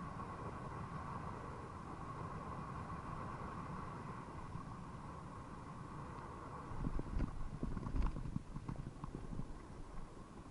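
Mountain bike rolling on pavement with wind on the microphone and a steady hum; from about seven seconds a run of irregular knocks and rattles from the bike, the loudest near eight seconds.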